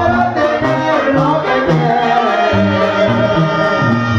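Live band music from a stage: singers over a bass line, percussion and backing instruments.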